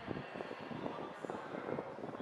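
Outdoor wind buffeting the microphone as an uneven, gusty rumble.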